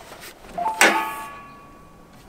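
Toyota Tacoma's steel hood being unlatched and lifted open: a single sharp metallic clunk a little under a second in, ringing on briefly before it fades.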